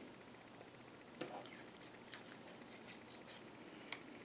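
Faint metallic clicks and light scraping of a steel feeler gauge blade being slipped into the barrel–cylinder gap of a Rock Island M200 .38 Special revolver, to check the gap. The sharpest click comes about a second in, and further ticks come near two seconds and near the end.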